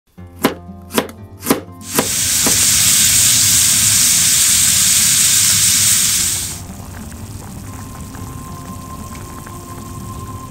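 A kitchen knife chops carrot on a plastic cutting board in four strokes, about two a second. Then sliced pork sizzles loudly in a frying pan for about four and a half seconds and dies down to a quieter background.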